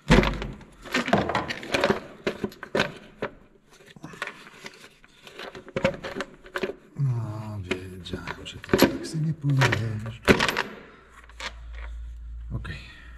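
Irregular knocks, clicks and plastic clatter as the valve cover of a TDI diesel engine is worked loose and lifted off, with a few low murmured voice sounds in the middle.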